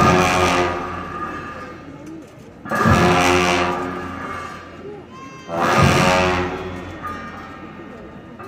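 Monastic cham-dance music: a drum and large cymbals struck together three times, about three seconds apart, each crash ringing and fading slowly before the next.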